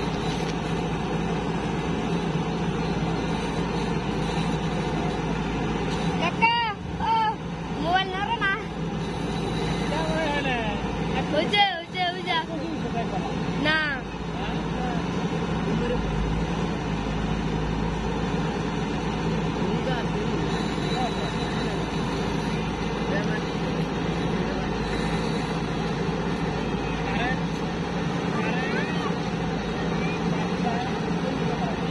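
JCB 3DX backhoe loader's diesel engine running steadily under load as it works in the mud. Voices call out briefly twice, about six and twelve seconds in.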